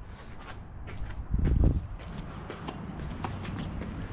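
Footsteps and camera handling noise: scattered light clicks over a low background, with a heavier low thump about one and a half seconds in.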